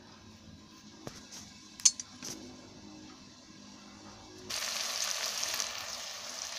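A few faint clicks, then, about four and a half seconds in, steady sizzling of tomato-onion masala frying in oil in an open pressure cooker pan.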